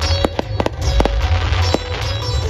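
Aerial fireworks shells bursting overhead: an irregular run of about six sharp bangs and pops in two seconds over a low rumble, with music playing underneath.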